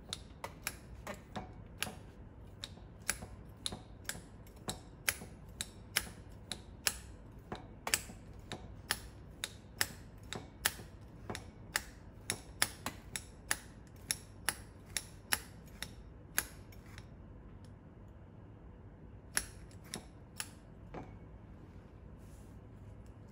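Manual tufting gun clicking with each squeeze of its handle as its needle punches yarn through the backing cloth, about two to three clicks a second. The clicking pauses for about two seconds near the end, then a few more clicks follow.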